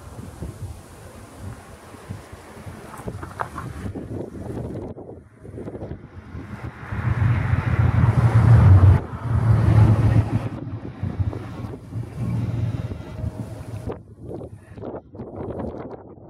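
Wind buffeting a compact camera's built-in microphone, a low rumble that comes in gusts, loudest in a stretch about seven to ten seconds in.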